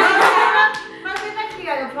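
A few hand claps, about half a second apart, mixed with voices talking.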